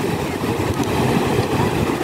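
Ocean surf breaking and washing up the beach, a steady rushing noise.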